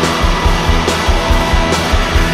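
Rock music from a band recording, with guitar over a steady drum beat.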